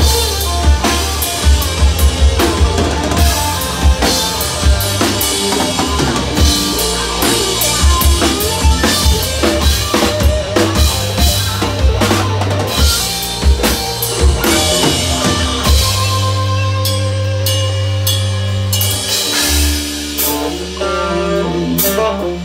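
Live rock band playing an instrumental passage: distorted electric guitars and bass over a busy drum kit with pounding bass drum and snare. Near the end the drumming drops out and the guitars and bass ring on in held chords.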